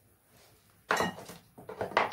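Two short bouts of clatter from small hard objects being knocked or set down, one sudden and loud about a second in, the other a quick run of knocks near the end.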